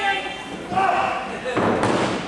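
A wrestler's body slamming onto the ring mat about one and a half seconds in, one heavy thud with an echoing tail from the hall. Raised voices come before it.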